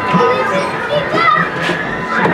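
Many children's voices overlapping, calling and chattering in a busy playground, with a few short sharp clicks.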